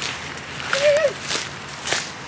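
Footsteps through dry grass and brush, several separate steps, with a short voice sound just before a second in.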